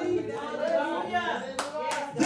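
Hands clapping in a church, with a couple of sharp claps near the end, over voices speaking and singing.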